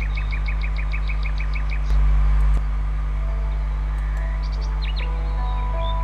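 A bird chirping in quick runs of short high notes, about five a second, in the first two seconds and again near the end, over a steady low hum that swells briefly about two seconds in. Faint held tones, like soft background music, sit underneath in the second half.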